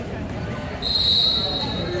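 Volleyball referee's whistle: one steady, high blast starting about a second in and lasting just over a second, the signal to serve, over a murmur of voices.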